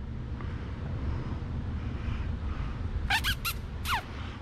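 A cat meowing: three or four short, high calls near the end, each falling in pitch, over low steady room noise.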